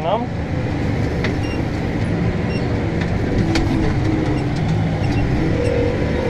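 Case Maxxum 125 tractor's diesel engine running steadily under load, heard from inside the cab, with a few light clicks and a brief higher note about three and a half seconds in.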